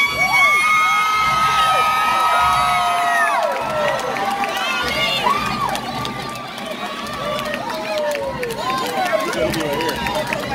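Crowd in the stands cheering and shouting to recruits as they march past, several voices holding long high whoops for the first three seconds or so, then scattered shouts and calls.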